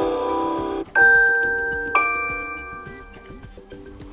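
Samsung Galaxy notification tone previews playing from the phone, one after another as different tones are tapped in the list. The first chime cuts off suddenly under a second in. A new chime starts about a second in and another about two seconds in, each ringing and slowly fading.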